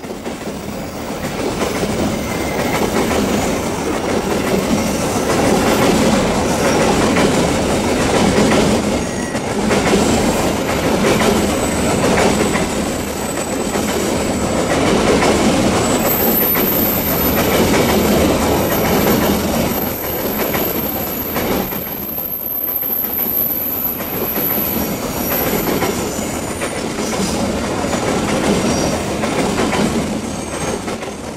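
Long train of empty steel coal hopper wagons rolling past close by on a curve, its wheels clattering continuously over the rail joints. A thin, high-pitched wheel squeal sounds from about halfway through for some nine seconds.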